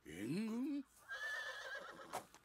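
A horse whinnying from the anime's soundtrack: a short, wavering high call about a second in, just after a man's short spoken line.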